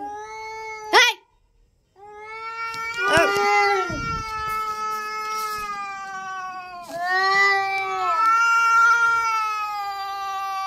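Domestic cats yowling in a face-off: long drawn-out wailing calls that waver in pitch, the territorial warning yowl of cats squaring up. A sharp rising shriek about a second in is the loudest moment, followed by a brief silence; the yowling then resumes and swells again about seven seconds in.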